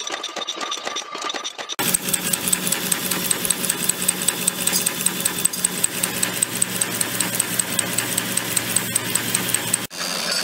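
Small automatic press machine making little wheels, running fast with an even run of sharp ticks, about five strokes a second, over a steady hum. For the first couple of seconds a different, lighter machine rattle is heard, and it stops suddenly.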